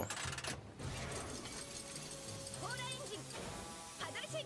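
Animated sound effects of a cartoon ship's paddle-wheel machinery being deployed: mechanical ratcheting and clanking over steady background music. A brief voice cuts in about two and a half seconds in.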